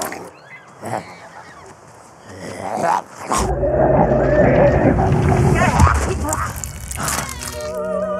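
A wavering cry over a deep rumble, loud from about three and a half seconds in, giving way near the end to operatic singing.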